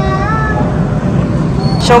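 Steady low outdoor rumble, with a faint, short, rising pitched call in the first half-second.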